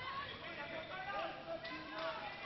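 High-pitched voices of young players calling out on an indoor handball court, over steady arena noise, heard through a TV speaker.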